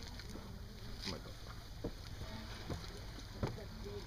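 Lake water lapping against a concrete seawall and wooden dock, with a few soft slaps about once a second over a steady low wind rumble.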